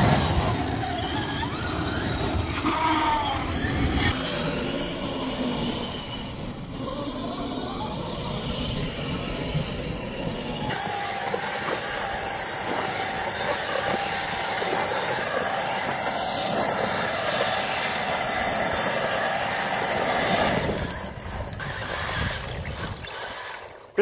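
Electric 1/8-scale RC cars driving hard on loose dirt, their brushless motors and drivetrains whining and rising in pitch as they accelerate. A steady high whine runs through the middle stretch, over the hiss of tyres throwing dirt.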